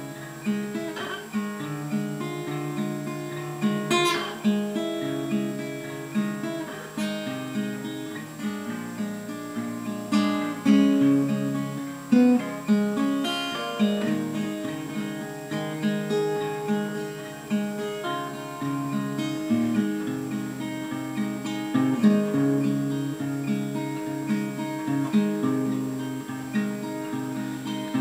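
Solo acoustic guitar, fingerpicked: a blues-folk instrumental intro of individually plucked notes over a recurring picked bass pattern.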